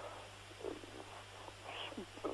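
A pause in a man's speech: faint breath and mouth sounds over a low steady hum.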